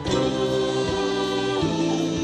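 Live band playing a held chord, with several voices singing a sustained harmony over the instruments; the chord changes about one and a half seconds in.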